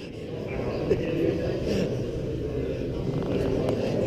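A motorcycle engine that has just fired up, running steadily at idle.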